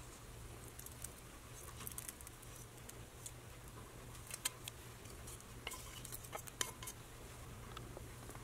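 Faint, scattered light clicks and taps of a stainless steel pan and utensil as the tempering is poured and scraped out onto the chutney, with a few sharper taps in the second half.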